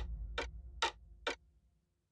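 A ticking sound effect in a TV channel's logo sting: four evenly spaced ticks, about two a second, over a low musical tone that fades away.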